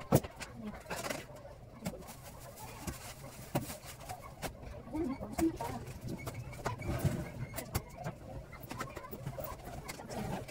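A few faint, low cooing calls from a bird, over a steady low hum and scattered light clicks and knocks.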